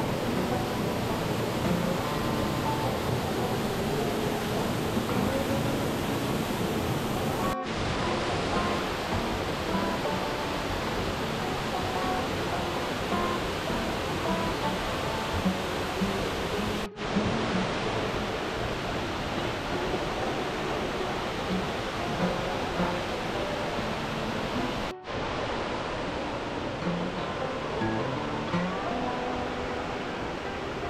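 Steady rushing of an 80-foot waterfall, heard close up, with soft background music playing over it. The sound breaks off for an instant three times.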